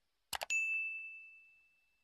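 Two quick mouse-click sound effects, then a single bright notification-bell ding that rings and fades over about a second and a half: the sound effect of a subscribe animation's bell button being clicked.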